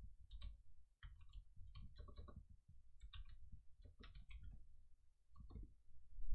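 Faint, irregular clicking from computer input, a few clicks at a time with short gaps between them.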